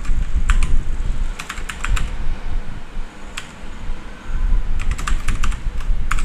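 Computer keyboard being typed on, in a few short bursts of keystrokes with pauses between, over a low steady rumble.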